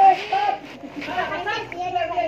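Indistinct, high-pitched chatter of several voices, children among them, talking and calling out.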